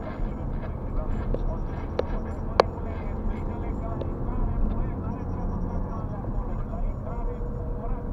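Low, steady rumble of a car's engine and tyres heard inside the cabin while driving, with indistinct talk under it. A few sharp clicks come around two to three seconds in.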